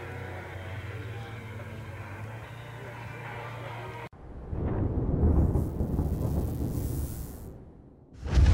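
Music over a steady hum, cut off abruptly about four seconds in. A deep cinematic rumble then swells up and fades away: the opening sound effect of a logo intro.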